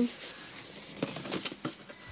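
Hands handling a boxed craft paper punch: the cardboard and plastic packaging rubbing and rustling, with a few faint taps.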